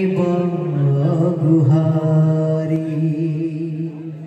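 Male voice chanting a Hindu devotional kirtan line in long, slightly wavering held notes, with no drumming.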